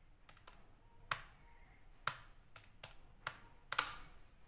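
Plastic keys of a Casio scientific calculator being pressed one at a time, giving about nine faint, irregularly spaced clicks as a short calculation is entered, two in quick succession near the end.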